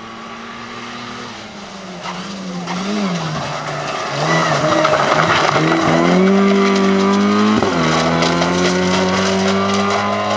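Rally car with a damaged, hanging front bumper driven hard past. The engine note falls and climbs through several gear changes as it approaches, then holds high and steady after a quick shift. It is loudest as the car passes about six seconds in, with a rush of tyre and gravel noise.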